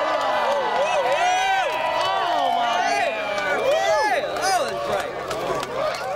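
Crowd of spectators cheering and shouting, many voices rising and falling over one another.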